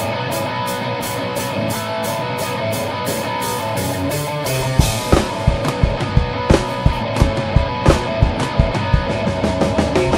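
Live new-wave band playing a song's instrumental intro: keyboard synthesizer notes over a steady ticking of about four strokes a second, with drum kit and bass coming in with strong, regular beats about five seconds in.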